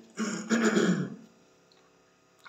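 A man clearing his throat once: a short, harsh rasp lasting under a second.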